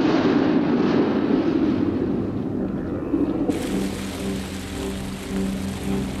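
Splash and churning water of a person diving into a river, fading over the first three seconds, under orchestral film score. About three and a half seconds in, a steady hiss of rushing water sets in.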